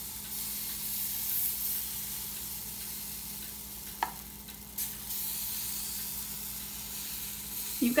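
Pancake batter sizzling on a hot stovetop griddle, a steady high hiss, with a small click about four seconds in.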